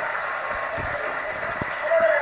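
A television playing in the room: thin, muffled voices coming through its speaker.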